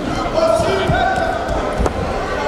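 Wrestling arena hall ambience: voices calling out across the hall, with a few dull thuds and one sharp click near the end.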